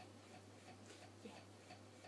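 Near silence: a low steady hum with a few faint, short ticks of a makeup brush dabbing in a small pot of powder.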